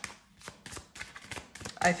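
A deck of tarot cards being shuffled by hand: a quick, uneven run of card clicks and flicks as the cards slide against each other.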